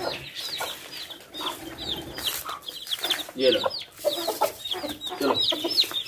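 Chicks peeping over and over in short, high chirps, several a second, with a hen's lower clucks now and then.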